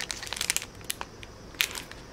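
Clear plastic packaging sleeve crinkling as it is handled: a run of sharp crackles in the first half second, scattered crackles after, and another burst near the end.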